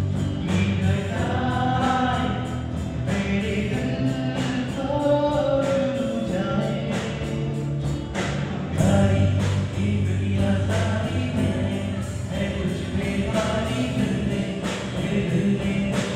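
Live pop/rock band performing a song: a male singer with electric bass, acoustic guitar, keyboard and drums, with a steady beat throughout.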